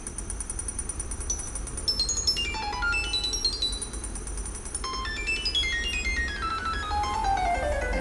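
Computer-generated notes from a light-controlled Arduino photoresistor instrument: quick runs of short, beep-like tones that step downward in pitch, going deeper as the hand shades the sensor, over a steady low hum.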